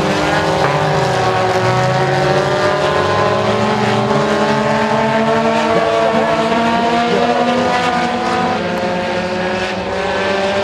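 Several four-cylinder front-wheel-drive dirt-track race cars racing, their engines running together as several overlapping notes that drift up and down in pitch.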